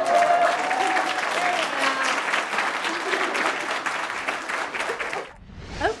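Audience applauding, with a long whooping cheer in the first second or so. The applause cuts off suddenly about five seconds in.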